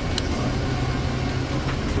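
Passenger van's engine running, heard inside the cabin as a steady low drone.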